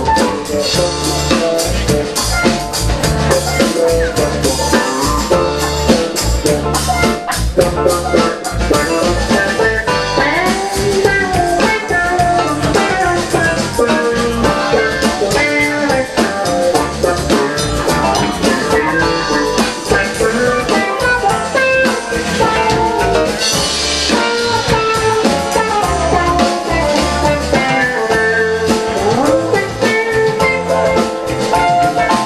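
Live rock band playing an instrumental passage: electric guitar lead with bending notes over a drum kit.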